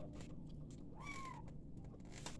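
Quiet chewing and mouth clicks from someone eating food by hand. About a second in comes one short, high animal-like call that rises and then falls.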